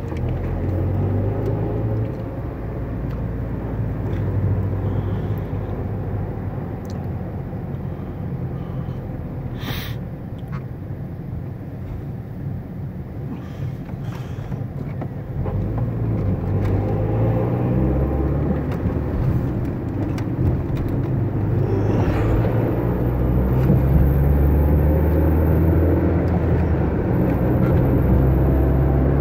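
Car engine and road noise heard from inside the cabin while driving. It is quieter around the middle and grows louder in the second half, with a single sharp click about ten seconds in.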